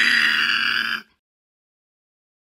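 A long, high scream held steady, cutting off abruptly about a second in, followed by dead silence.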